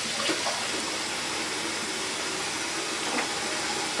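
Bathroom sink tap running steadily, with a few light knocks of things being handled on the counter.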